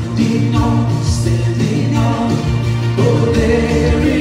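Live worship band playing, with a woman singing lead over acoustic and electric guitar, keyboard and drums.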